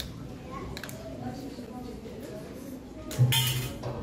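Low, indistinct murmur of voices on a stage, then about three seconds in a loud, sudden sound cuts in briefly, hissy with a steady low hum underneath.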